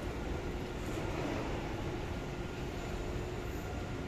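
Steady low rumble and hiss of a large, nearly empty shopping mall's background noise, most likely its air-conditioning, with a faint steady hum and no distinct events.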